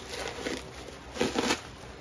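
Plastic packaging and bubble wrap rustling and crinkling as they are handled, with a louder crinkling burst just past the middle.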